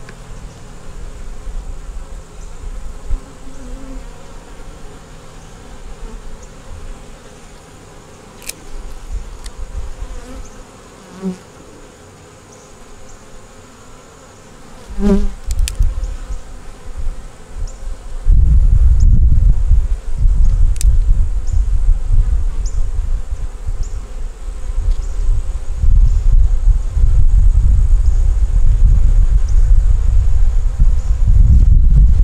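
Honeybees buzzing around an open nuc box, with single bees flying close past the microphone about 11 and 15 seconds in. From about 18 seconds in, a loud, uneven low rumble covers the buzzing.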